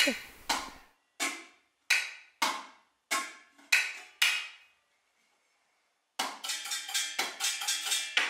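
Metal kitchen pots and a pot lid struck with a wooden spoon as percussion: seven evenly spaced strikes, each ringing briefly, then after a short pause a fast clattering run with a metallic ring.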